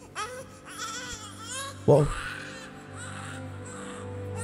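A baby crying in short wails that rise and fall, over soft background music, with a man's brief "whoa" about two seconds in.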